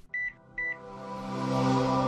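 Channel intro sting: two short high electronic beeps, then a sustained musical chord that swells steadily louder.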